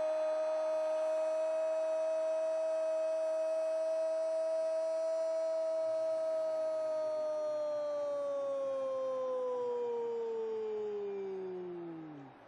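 A Brazilian Portuguese TV football commentator's long drawn-out "Gooool" goal cry: one held note for about seven seconds, then slowly falling in pitch until it stops.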